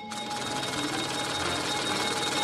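Cartoon sound effect of a mechanical number counter spinning its drums at high speed: a fast, steady clatter of rapid ticks that grows slightly louder.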